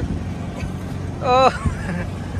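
Steady low rumble of vehicle traffic, with a short high-pitched voice calling out briefly a little past halfway through.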